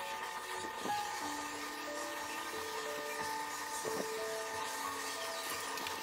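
Epson L8050 inkjet printer's motors running as it starts a test print: a whirring hiss with steady tones that shift pitch every second or so, and a few light clicks.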